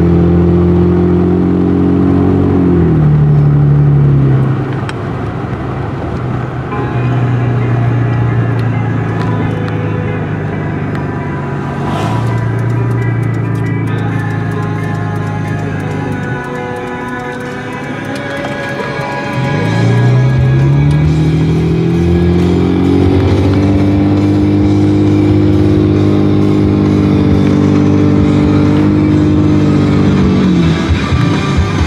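Car engine heard from inside the cabin, with music playing. Its pitch drops as the car slows about three seconds in and stays low for a while, then climbs as the car accelerates about twenty seconds in and settles to a steady cruise.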